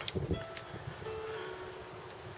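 A few sparse, faint piano notes played inside the boat's cabin and heard from out on deck, with a short knock just at the start.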